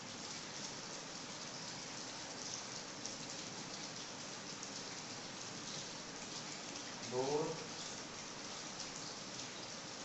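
Steady background hiss with faint scratchy strokes of a marker writing on a whiteboard, and a short murmur of a man's voice about seven seconds in.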